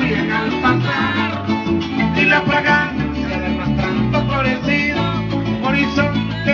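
Venezuelan música llanera played by a small band, led by a llanero harp plucking quick runs over a steady bass line, with no singing heard.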